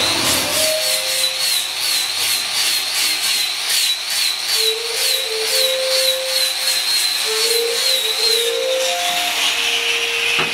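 Electric angle grinder grinding wood: a steady high whine over a hiss, wavering in pitch as the disc is pressed into the wood, then falling in pitch near the end as it winds down.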